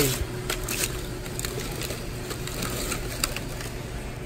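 Plastic food packaging crinkling and clicking as frozen packages are handled in a chest freezer, a few short crackles scattered over a steady low hum.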